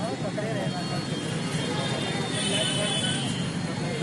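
Outdoor street ambience: steady traffic noise with indistinct voices talking in the background.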